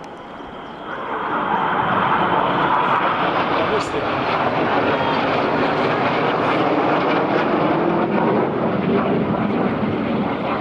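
Several BAE Hawk T1 jets passing overhead: the jet engine noise swells about a second in and stays loud, deepening in pitch later as they go past.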